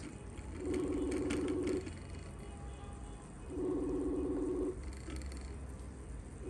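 Mobile phone on speaker playing a call's ringback tone: two rings, each about a second long and about three seconds apart, a low warbling tone. The call is not being answered.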